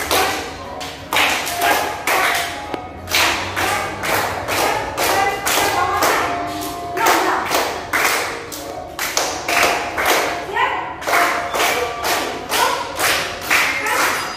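Hand claps keeping time for a children's ballet exercise, about two to three sharp claps a second, with a voice singing held notes along with them.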